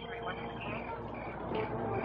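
Indistinct voice over the steady low hum and hiss of an old film soundtrack.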